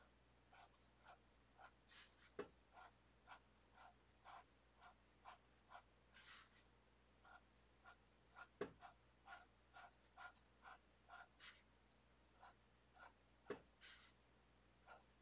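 Pen tip scratching on paper in short, quick, faint strokes, about two a second, as the printed lines of a coloring page are filled in. A few light knocks stand out among the strokes.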